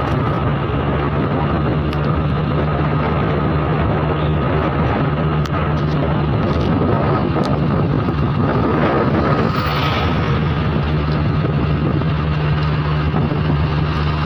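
Small motorbike engine running steadily at cruising speed, with road and wind noise rushing over the microphone. The noise swells briefly about nine seconds in as oncoming traffic passes.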